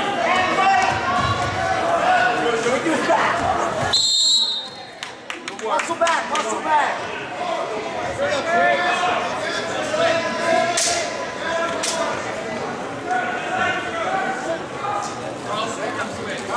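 Many voices of spectators chattering in a gym that echoes. About four seconds in, a referee's whistle sounds once, short and high, and the sound then drops away for a moment before the chatter returns.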